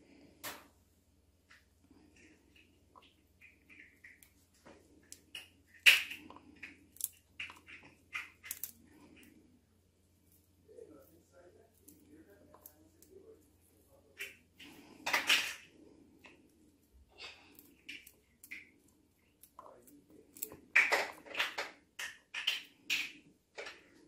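Pomegranate seeds being picked out by hand and dropping into a plastic bowl: faint, scattered clicks and light taps, with a few louder knocks and a quicker run of taps near the end.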